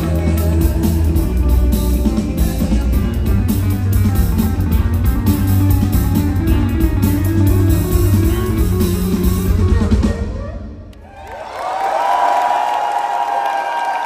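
Live rock band with guitars, bass and drums playing loudly, then stopping abruptly about ten seconds in. A crowd cheering and shouting follows.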